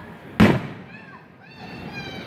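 Aerial firework shell bursting: a single sharp bang about half a second in.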